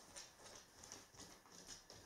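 Faint, light ticking of a dog's claws on a wooden floor as it walks in, about three or four soft clicks a second.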